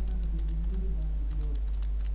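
Typing on a computer keyboard: an irregular run of quick key clicks, over a steady low hum.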